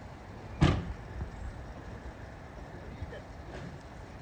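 Panel van's driver door slammed shut once from inside, a single sharp metallic thud about half a second in.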